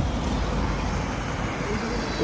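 Steady low rumble of road traffic and wind on the microphone, with no single event standing out.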